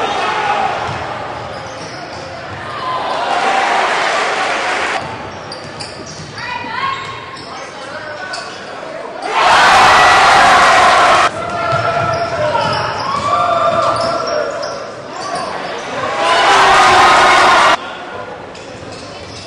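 Basketball game sound in a gym: the ball bouncing, voices, and a crowd cheering. The cheering swells into two loud bursts, about nine and sixteen seconds in, and each one cuts off suddenly.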